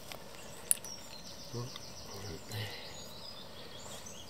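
Faint outdoor background noise with a rapid, high-pitched trill through the middle, and one sharp click just under a second in.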